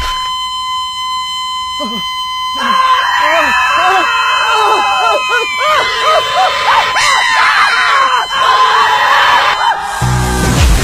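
Heart monitor flatline: one steady high electronic tone held almost ten seconds. From about three seconds in, cartoon characters scream and wail over it.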